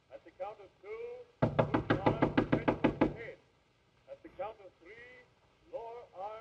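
Rapid, even thumping from the other side of a closed door, about fourteen blows at some eight a second, lasting under two seconds. It is heard as someone exercising in the room.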